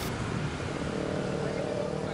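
Street traffic: steady noise of passing vehicles and motorcycle engines, with a low engine hum coming in about a second in.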